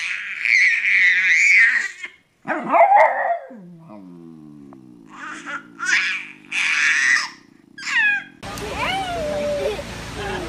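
A dog barking at a baby while the baby squeals and laughs back, in loud bursts with a quieter stretch in the middle. Near the end the sound cuts to outdoor background noise with a voice.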